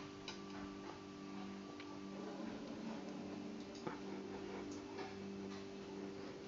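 A faint steady low hum with a few scattered light clicks and taps, about one every second.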